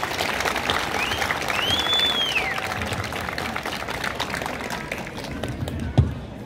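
Outdoor crowd applauding after a speech, the clapping dying away toward the end. A brief high whistle rises and falls about two seconds in.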